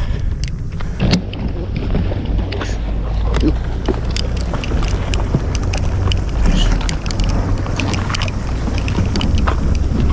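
Steady low rumble of a ferry boat's engine as it comes alongside a concrete breakwater, with scattered short clicks and knocks over it.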